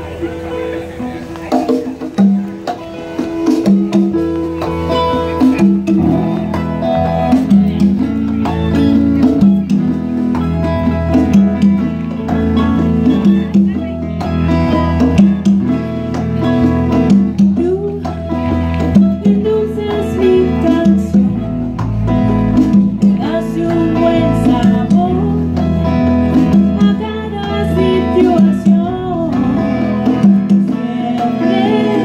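A small live band playing Latin-style music: congas, mandolin, electric guitar and bass, with a woman singing into a microphone. The band comes in over the first few seconds and then plays on at full volume.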